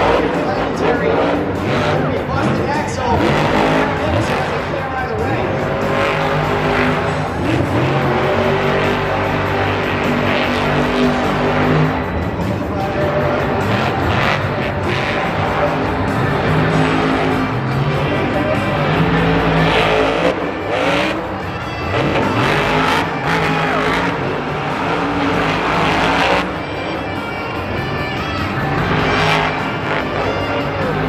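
Monster truck engine revving hard and easing off again and again, its pitch rising and falling, with tires skidding during a freestyle run. Stadium music plays underneath.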